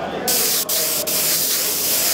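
Airbrush spraying paint: a steady high hiss of air that starts sharply about a quarter second in, cut off briefly twice in the first second as the trigger is let off and pressed again.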